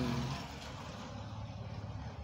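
A voice trails off at the start, then a steady low background rumble.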